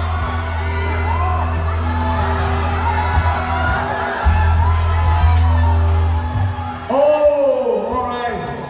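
Live band music over a concert PA: a heavy, steady bass and held keyboard tones, with a voice singing and calling over it. A loud shout comes about seven seconds in.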